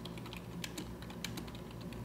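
Computer keyboard typing: faint, quick, irregular keystrokes as a short phrase is typed, over a low steady hum.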